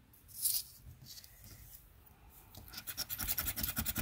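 A plastic scratcher scraping the coating off a Loteria scratch-off lottery ticket. There is one brief scrape about half a second in, then rapid, closely spaced scratching strokes from near the three-second mark onward.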